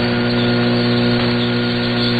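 Shortwave AM radio reception with no speech: a steady low buzzing hum over a haze of band noise and static hiss.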